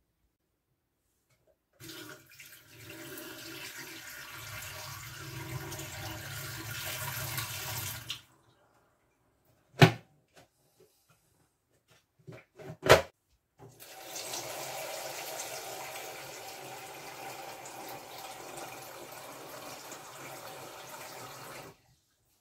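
Water running into a stainless-steel kitchen sink, first as the Brita filter jug is emptied out. After two sharp knocks, the kitchen tap runs steadily into the jug's filter reservoir to flush the new cartridge.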